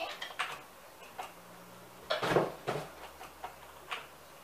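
Light clicks and taps, with one louder knock a little past two seconds in: a large dog's claws and paws shifting on a low round platform.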